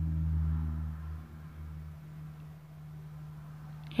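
A low, steady hum with no other clear events; it drops in level a little after a second in.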